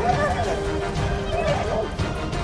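Soundtrack music with a held note, over which fighting spotted hyenas give high, wavering cries twice: once near the start and again just past the middle.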